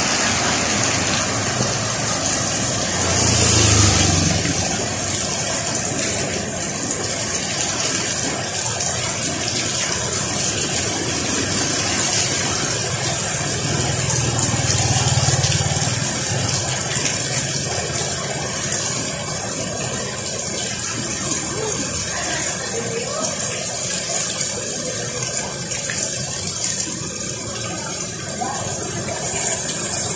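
Heavy rain falling steadily on a wet street, a constant hiss. The low rumble of passing motorcycle engines swells about three seconds in and again around fifteen seconds.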